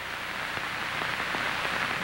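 A steady hiss-like noise that slowly grows louder and then cuts off suddenly at the end.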